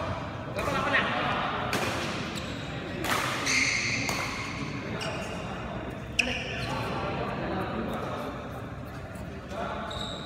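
Badminton rally on an indoor court: racket strikes on the shuttlecock, the sharpest about six seconds in, and shoes squeaking and stepping on the court floor, with voices echoing in the hall.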